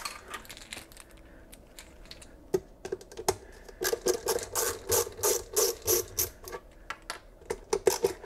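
Screwdriver unscrewing a screw that holds a foot to a wooden cabinet's bottom: after a quiet start, a couple of single clicks, then an even run of sharp clicks about three a second.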